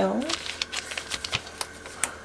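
Thin plastic packaging tray of a solid curry roux block crackling and clicking irregularly as it is handled over the pan.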